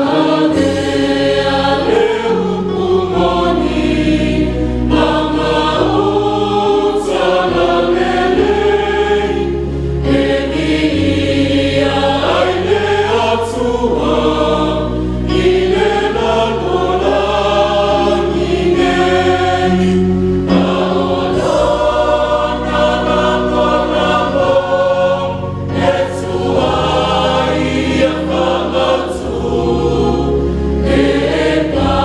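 Mixed church choir singing a Samoan hymn in parts, men's and women's voices together, over steady bass notes from an electronic keyboard accompaniment.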